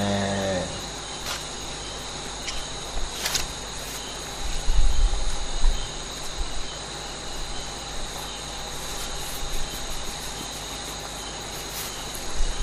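A pause in a recorded talk. A steady high-pitched whine runs throughout, with a few light clicks early on and several deep thumps around the middle.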